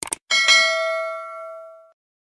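Animated subscribe-button sound effect: two quick clicks, then a bright bell ding that rings and fades away over about a second and a half.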